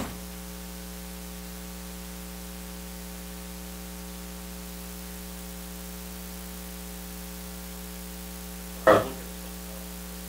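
Steady electrical mains hum with a stack of evenly spaced tones, picked up by the recording system while the room is quiet. A single short voice sound breaks in briefly near the end.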